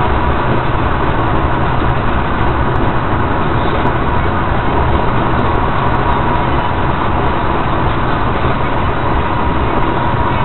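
A car cruising at highway speed, heard from inside the cabin: steady, even tyre and engine noise with a faint steady high whine.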